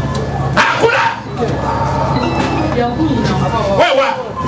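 Voices crying out and speaking into a microphone, with short yelp-like cries; a steady background music bed stops abruptly with a click about half a second in.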